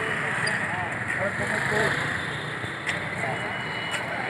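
Busy street noise: several people talking in the background over a steady hum of passing traffic.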